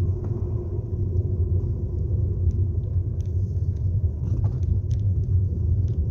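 Car driving slowly, heard from inside the cabin: a steady low rumble of engine and road noise.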